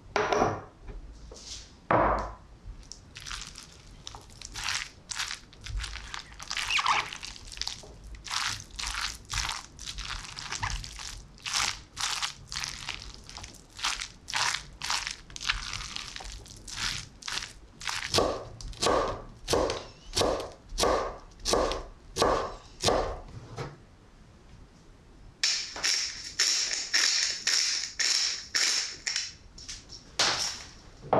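A silicone spatula stirs and folds chunky tuna salad in a glass bowl, in repeated wet strokes about one to two a second. Near the end a steadier, hissing rasp takes over as black pepper is added.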